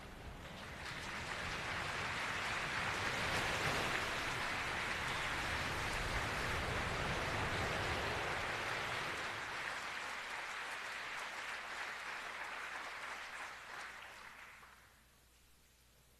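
Audience applauding: the clapping builds in the first second or two, holds steady, then dies away about fourteen seconds in.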